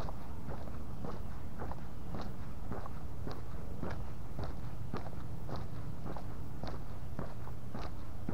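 Footsteps of a person walking on a paved street, an even pace of about two steps a second, over a steady low rumble.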